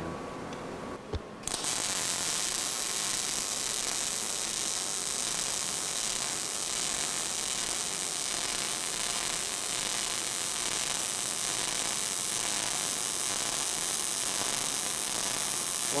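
MIG welding arc striking about a second and a half in, then a steady frying crackle as a pass is laid along a horizontal V-groove joint in steel plate.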